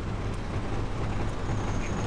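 Steady low rumble of vehicle engines, with no distinct knocks or other events.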